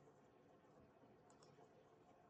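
Near silence: faint room tone, with two faint computer-mouse clicks close together about a second and a half in.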